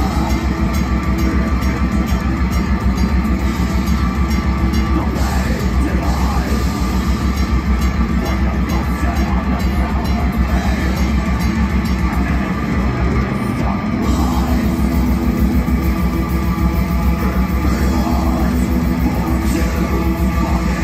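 Metal band playing live: distorted electric guitars over a drum kit in a loud, dense, continuous wall of sound, heard from the crowd.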